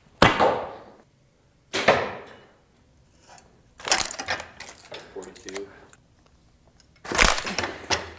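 Arrow shot from a bow into a dense foam 3D target, striking sharply just after the start, with a second sharp hit about two seconds in. Then scraping and rubbing as an arrow is dragged out of the stiff foam, and another sharp burst about seven seconds in.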